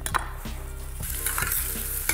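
Diced onion and celery frying in sunflower oil in a steel saucepan, sizzling as a spoon stirs them and clicks against the pan. The sizzle swells from about a second in, after a single knock near the start.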